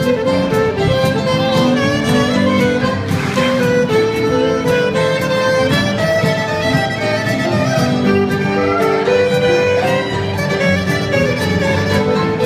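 Live contra dance band playing a tune with a steady beat: the fiddle leads over acoustic guitar accompaniment.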